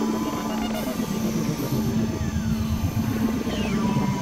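Dense experimental electronic noise collage: several music tracks layered at once into a busy, noisy texture over a steady low drone, with a few faint sliding tones.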